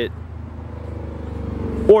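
A motor vehicle's engine, a low hum that grows steadily louder.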